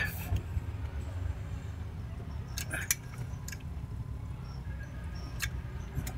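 Steady low background hum with a few light clicks of small parts being handled, a cluster about three seconds in and one more near the end.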